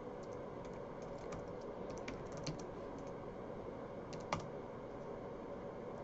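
Faint computer keyboard typing: scattered light key clicks, with one louder click about four seconds in.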